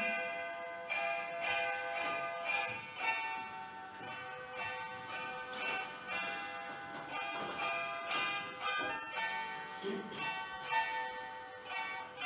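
Plucked lap zither playing a solo instrumental passage: a steady run of notes, each ringing on under the next.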